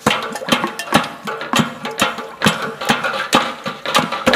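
Matachines dance drum beaten close by in a steady rhythm, about two strokes a second, with the dancers' rattles shaking between the beats.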